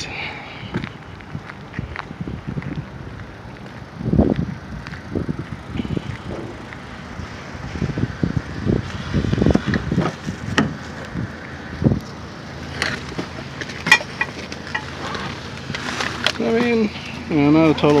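Footsteps on asphalt and the scuffing and knocking of a handheld phone being carried, in irregular thumps. A person's voice comes in near the end.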